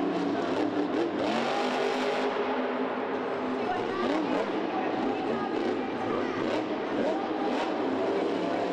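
The 1500-horsepower engine of the Taz monster truck revs up and falls back again and again as the driver works the throttle through a drive and a jump, over the noise of a stadium crowd.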